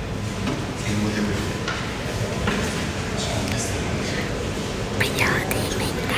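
Indistinct murmur of voices with no words clear, over a steady low hum.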